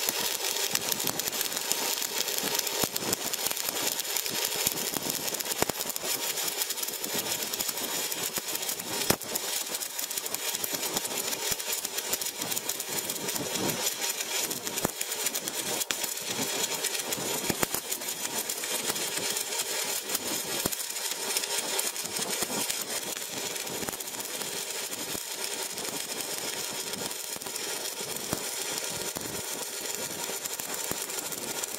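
Electric arc welding: the arc crackling steadily as the weld is laid, easing slightly in the last several seconds.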